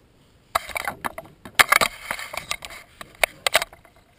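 Hands handling a laptop LCD panel and its display cable: a run of irregular rustles and sharp clicks starting about half a second in.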